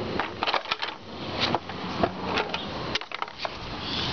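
Skateboard on brick paving: a run of irregular sharp clicks and clattering knocks from the board and its wheels over the bricks and their joints.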